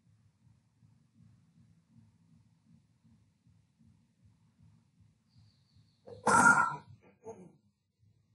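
A person's short, loud vocal noise about six seconds in, followed by a shorter, fainter one, over a faint low hum.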